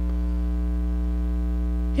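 Steady electrical mains hum in the sound system: a loud low drone with fainter, evenly spaced higher tones above it, unchanging throughout.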